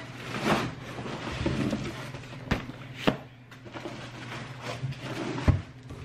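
Cardboard boxes being handled and drawn out of a cardboard shipping carton: uneven rustling and scraping, with sharp knocks about two and a half, three, and five and a half seconds in.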